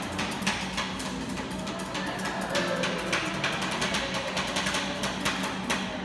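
Metal spatulas chopping and scraping ice cream mix on a steel cold plate to make rolled ice cream: a quick, irregular run of sharp metallic clacks, with music playing in the background.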